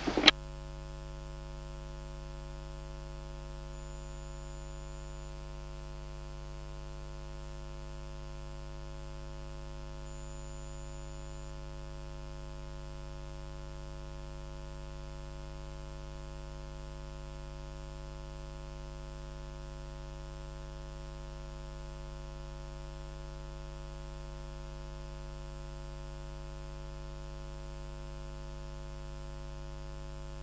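Steady electrical mains hum on the audio line, unchanging throughout, with a brief click just at the start and no other sound.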